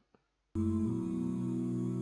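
A faint click, then about half a second in an a cappella vocal group's hummed chord starts suddenly and holds steady.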